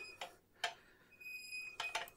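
A few faint, sharp clicks and ticks as the screw handle of a carbon-pile load tester is turned to compress its graphite disks and apply load. A short, steady, high beep-like tone sounds about a second and a half in.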